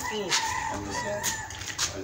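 Short voice-like sounds, then a long call held on one pitch for about a second.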